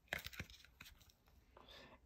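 Faint crackle and a few small clicks of a cardboard board book being opened by hand to its first page, mostly in the first half second.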